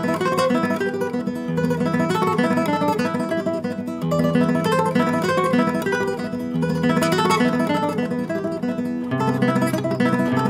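Nylon-string classical guitar played in tremolo spread over two strings against open strings. The middle finger is on the second string and the index and ring fingers on the first, giving fast repeated treble notes while the thumb moves freely in the bass. The bass note changes about every two and a half seconds.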